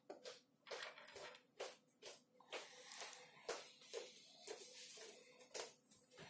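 Faint, irregular clicks and scrapes, one or two a second: 18-gauge stranded wire being pressed by finger into the slot of an orange MTA-156 insulation-displacement connector, its shaved insulation working down against the plastic housing and metal contact.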